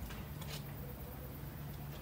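Quiet room tone: a steady low hum with a couple of faint ticks near the start.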